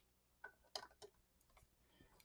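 Near silence with a few faint, short clicks in the first half, from small objects being handled.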